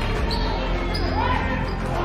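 Live basketball game sounds in a school gym: a ball bouncing on the court and short sneaker squeaks over the murmur of spectators.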